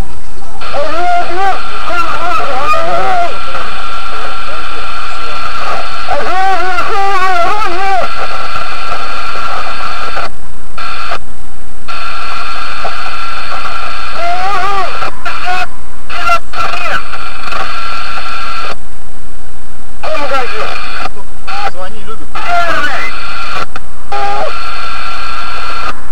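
Taxi dispatch two-way radio channel: a loud, hissy, heavily distorted transmission carrying a strained, garbled voice, with the signal cutting out abruptly several times in the second half. It is a driver's distress call over the radio, a choked wheeze from a man being strangled, before the call sign "1-1" comes through.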